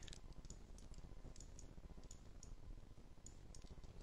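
Faint computer mouse clicks, a dozen or so scattered irregularly, over a near-silent low background hum.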